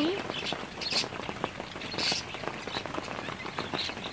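Steady rain pattering, with many separate drops ticking, as water streams off a roof edge. Two brief louder hissy splashes come about one and two seconds in.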